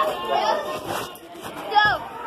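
Chatter of several young voices talking over one another, with a short, loud, high-pitched vocal cry near the end.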